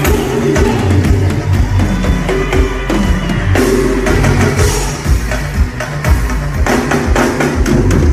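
Loud live band music: a driving drum kit beat with heavy bass drum and a full band over the stage PA, with no singing.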